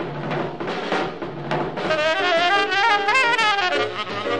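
Small jazz group of tenor saxophone, piano, double bass and drums. Drum strokes over walking bass open the passage, then the tenor saxophone comes in about two seconds in with a fast, climbing run of notes.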